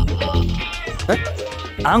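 Film background music with a brief high-pitched, whining voice sound in the middle.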